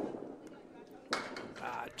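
A candlepin bowling ball lands on the wooden lane with a sharp thud, then rolls down the lane toward the pins.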